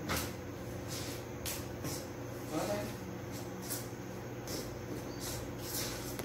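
A spoon scraping and stirring in a stainless steel bowl, mixing crumbly cassava-starch dough, with irregular short scrapes and knocks against the metal.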